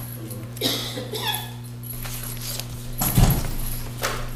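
Steady electrical hum from the courtroom audio system, broken by a brief rustle about a second in and a louder bump about three seconds in.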